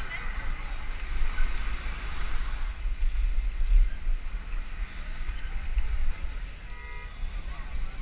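Wind buffeting a helmet-mounted action camera's microphone while cycling, with voices of the surrounding riders and onlookers. A short pitched toot sounds about seven seconds in.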